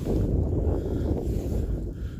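Wind buffeting the microphone: a steady low rumble with no clear tone.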